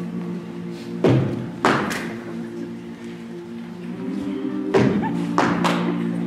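A cappella group holding sustained vocal chords, with sharp percussive hits landing in two groups of three, one around a second in and one near the end.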